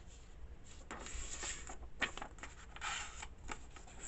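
A sheet of paper being folded and handled. There are soft rustles and crinkles in a few short spells, the clearest about a second in and again near three seconds.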